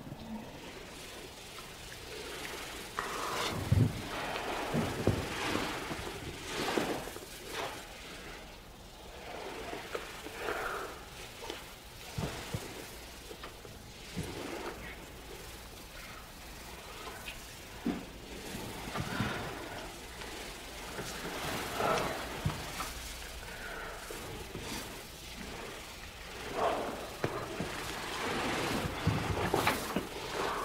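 Two people breathing heavily and sighing, in irregular breaths every second or two, with a few short soft kissing sounds between them.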